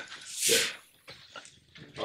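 One short, breathy huff of laughter about half a second in, then a hush of room tone with a few faint clicks.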